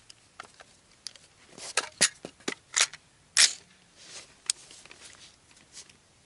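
A string of sharp clicks and metallic clacks from handling an AR-15 rifle as it is readied to fire, the two loudest about two seconds and three and a half seconds in.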